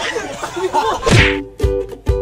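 A voice talking is cut off about a second in by a whoosh-and-hit transition effect, then an intro jingle starts: held chords over a regular low beat, about two beats a second.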